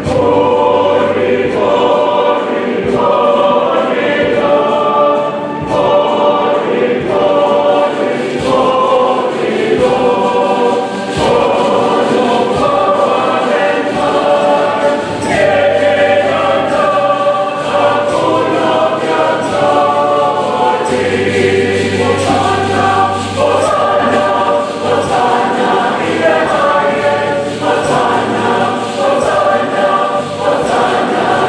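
Church choir singing a hymn in harmony, many voices together and without a break.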